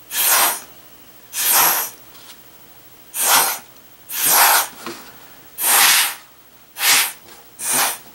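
Seven short, hard puffs of breath blown through a drinking straw, each a half-second rush of air, about one a second, driving wet watercolor paint across paper in streaks.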